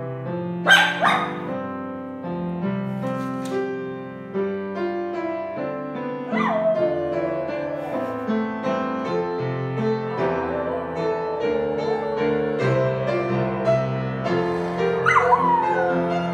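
A schnauzer howling along to a grand piano being played: a short high yelp about a second in, then long howls that start high and slide down, one about six seconds in that trails on for several seconds and another near the end, over continuous piano playing.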